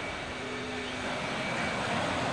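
Small ocean waves washing up onto a sandy beach, a steady rushing noise.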